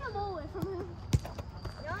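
Soccer balls being touched and kicked on artificial turf, a scatter of light knocks with one sharp kick about a second in, over children's voices.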